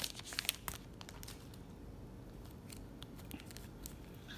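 Clear plastic wrap crinkling and tearing as it is pulled off a stack of trading cards, busiest in the first second, then fading to faint rustles and small clicks.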